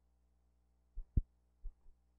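Steady low hum with soft low thumps, mostly in pairs, recurring at an even pace about every second and a third; a sharp single thump a little past halfway is the loudest. This is film soundtrack noise on silent newsfilm footage, with no recorded scene sound.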